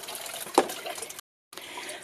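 Water trickling steadily from a small garden fountain, with a couple of light clicks. The sound cuts out completely for a moment just past a second in, then goes on a little quieter.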